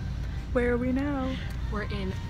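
A woman's voice making two drawn-out vocal sounds with sliding pitch and no clear words, over a low steady background rumble.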